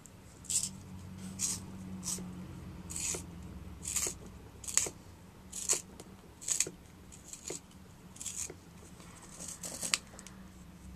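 An orange wooden pencil being twisted in a small handheld pencil sharpener, the blade shaving the wood in short scraping strokes about once a second.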